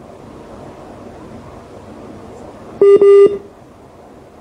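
Two loud electronic telephone beeps over the phone line about three seconds in, a very short one followed at once by a slightly longer one, over faint line hiss.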